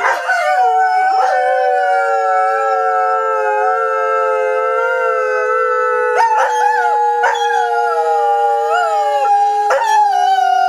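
Greyhounds howling: long, drawn-out howls held at a fairly steady pitch, with more than one voice overlapping. Fresh howls break in about six and seven seconds in.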